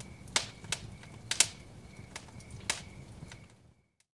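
Several sharp clicks at uneven intervals, the loudest about a second and a half in, over a low steady hum; everything fades out just before the end.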